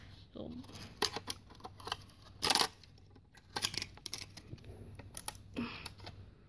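Plastic parts of a DVD drive clicking and rattling as its board and SATA connector are pulled off by hand, a run of sharp clicks with a louder scraping clatter about halfway through.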